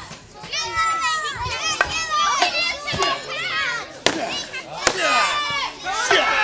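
Children in the crowd shouting and cheering with high-pitched excited voices, with two sharp knocks a little under a second apart about four seconds in.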